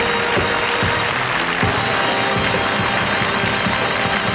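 Stage band music playing, with a dense, even hiss under it throughout.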